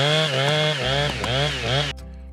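Chainsaw engine running at high revs, its pitch rising and falling several times, then cutting off just before the end.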